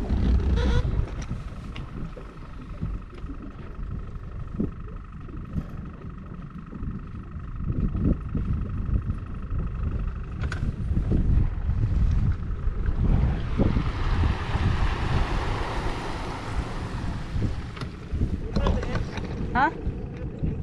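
Wind buffeting the microphone aboard a motorboat, a steady low rumble, with a faint steady whine in the first half and a swell of hiss in the last third.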